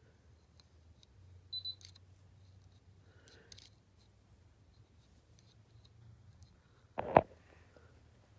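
Faint, scattered clicks of a hook tool lifting hem stitches onto the latch needles of a circular sock knitting machine. A brief high squeak comes about one and a half seconds in, and a short, louder thump about seven seconds in.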